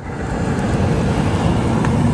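Vehicles driving past close by, a steady rush of tyre and engine noise that swells in the first half second and then holds.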